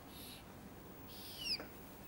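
Marker pen drawing lines on a whiteboard: a faint scratch just after the start, then a short squeak that glides down in pitch about one and a half seconds in.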